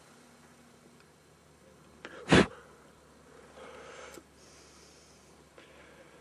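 A single loud, short sneeze close to the microphone about two seconds in, with a softer noise about a second after it, over faint background hiss.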